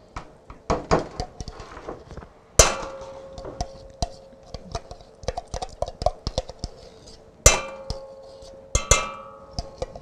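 A metal utensil scraping and tapping inside a tin can of pumpkin puree, working the puree out into a pot, with many small clicks and scrapes. Loud metallic knocks that ring on come about two and a half seconds in and twice more near the end.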